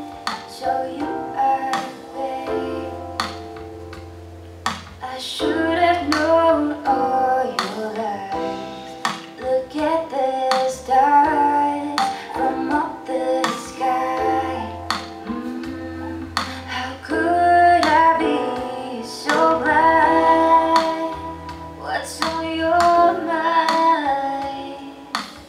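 A recorded song played back over room loudspeakers: a female voice singing a melody over plucked-string accompaniment and held low bass notes.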